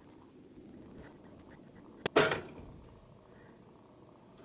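Pop-up toaster releasing its finished toast: a sharp click about halfway through, then at once a louder spring-loaded clunk as the carriage pops up.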